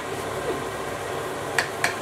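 Cutlery clicking twice against a plate near the end, over a steady background hiss.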